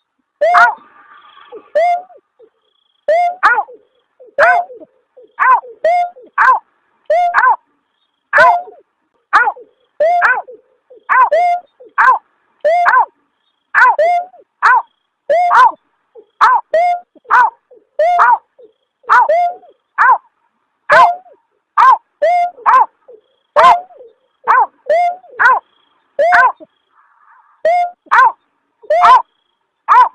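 Call of the paddy-field bird known locally as berkik or beker (punguk): short, falling 'aw' notes repeated rapidly, with brief pauses near the start and near the end. It is a lure recording, an mp3 of the call used by night bird-netters.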